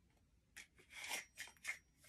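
Faint rustling and crackling of a brick jointer's blue packaging being handled, a few short crackles starting about half a second in.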